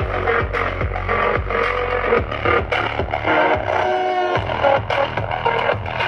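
Electronic dance music with a steady kick-drum beat, played loud through two bare woofers driven by a TDA7498 class D amplifier board; the bass drops out briefly about four seconds in.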